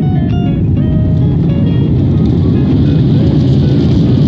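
Loud, steady low rumble of a jet airliner rolling down the runway after touchdown, heard from inside the cabin. Background music with a stepping melody plays over it.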